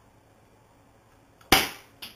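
A single airsoft pistol shot about a second and a half in, after a quiet room: a sharp snap that dies away quickly.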